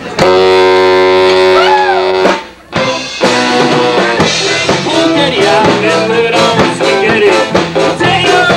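A live ska band with saxophone, guitar and drums starts a reggae number: a loud chord is held for about two seconds, breaks off briefly, then the band comes in with a steady rhythmic groove.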